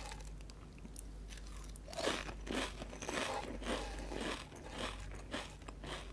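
Crunchy seaweed-teriyaki snack crackers being chewed. After a quiet start comes a run of crisp crunches, about three a second, from about two seconds in until near the end.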